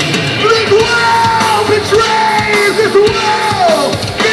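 Live hardcore punk band playing loud, with distorted guitar, drums and a yelled vocal; held notes slide down in pitch near the end.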